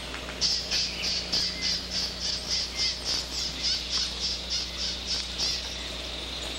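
A bird calling in a fast run of harsh repeated high notes, about three to four a second, which stops near the end, with faint chirps of other birds behind it.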